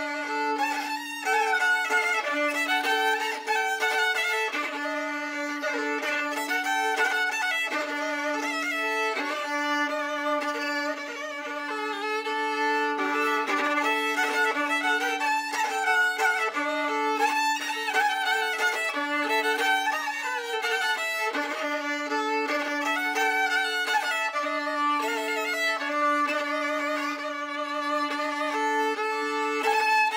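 Solo violin playing a Ukrainian folk fiddle tune from Polissia, northern Ukraine. The melody moves above a low note that is held almost without break, with a second held note sounding on and off above it.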